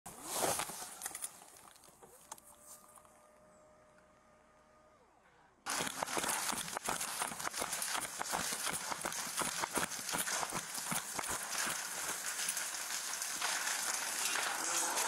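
A burning barn: from about six seconds in, a dense, rapid crackling of the fire mixed with footsteps and clatter. Before that, some clattering, then one long steady tone lasting about three seconds.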